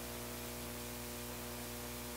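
Steady electrical mains hum with its buzzing overtones over a constant hiss, from an amplified music rig of synths, drum machine and guitar amp sitting switched on with nothing played.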